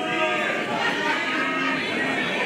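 Human voices making long, drawn-out, wavering vocal sounds, several overlapping.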